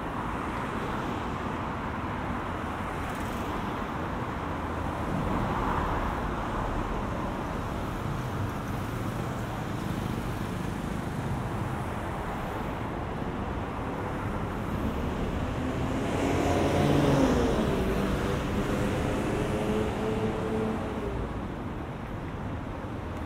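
Steady road traffic on a multi-lane street, with cars passing. About three-quarters of the way in, a louder heavy vehicle's engine comes through with a pitched tone that drops, then holds steady for a few seconds.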